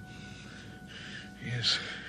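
A man gasping and breathing hard, with one sharp, loud gasp about one and a half seconds in, as he wakes from a nightmare. Faint held music tones sound underneath.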